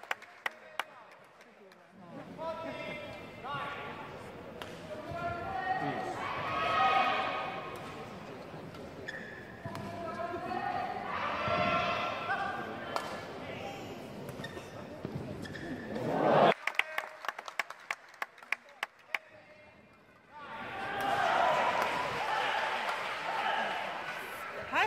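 Live badminton match in an arena: sharp cracks of rackets striking the shuttlecock in quick exchanges, alternating with loud crowd shouting and cheering. The crowd noise cuts off suddenly about two-thirds of the way through, giving way to a rapid run of hits, and the crowd swells again near the end.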